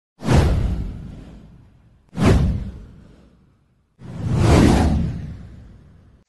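Three whoosh sound effects for a title intro, about two seconds apart, each a rushing swell that dies away over a second or more. The first two start abruptly with a deep hit; the third builds more gradually before fading.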